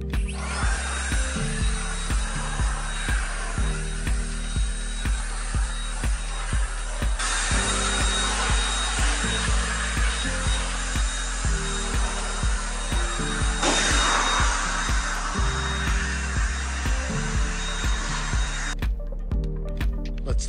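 Cordless electric blower running steadily, a loud even rush of air blowing dust out of a car's grille and door gaps; the air noise gets louder twice and stops near the end.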